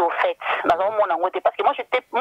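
Speech only: a voice talking without pause, narrow and thin as if heard over a telephone line.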